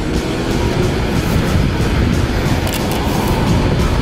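Steady rumbling ride noise of a Bird electric rental scooter rolling along a paved sidewalk, with music playing underneath.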